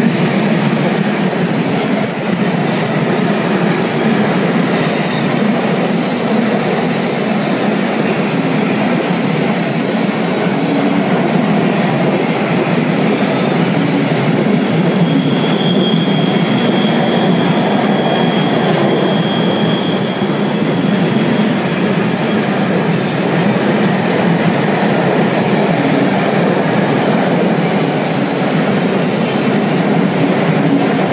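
Container freight train rolling past at close range: the steady noise of its flat wagons' wheels running on the rails. A thin, high wheel squeal sounds for about five seconds around the middle.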